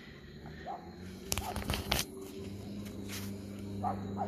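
Handling clicks and knocks on a phone as it is turned around, clustered about a second and a half in, over a faint low steady hum and a few faint short chirps.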